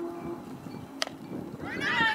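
A single sharp crack of a bat hitting a softball about a second in, then high-pitched shouts from players and spectators that rise and get louder near the end.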